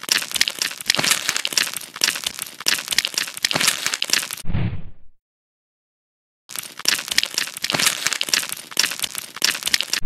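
A crunchy, crackling scraping sound effect, dense with tiny cracks, standing in for a knife scraping a mass of bees off a scalp. It comes in two runs of about four seconds, each ending in a short, duller low sound, with a full second and a half of silence between them.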